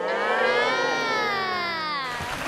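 A long, drawn-out 'ồồ' ('ooh') exclamation in one voice, its pitch rising slightly and then sliding down over about two seconds before it stops.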